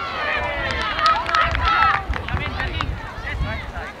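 Several voices shouting and calling out at once, overlapping and high-pitched: sideline spectators and players yelling during play.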